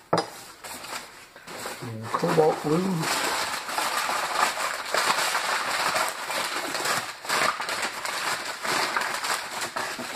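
Crumpled newspaper packing rustling and crinkling in a dense, continuous crackle as a glass is unwrapped from it by hand, starting about three seconds in.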